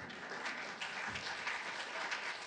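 Audience applauding, a light, even clapping.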